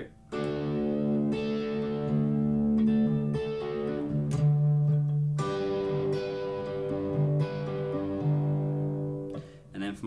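Electric guitar in drop D tuning playing a sequence of chords: triad shapes on the middle strings over a low bass note, each chord struck and left to ring, with a change of chord every few seconds.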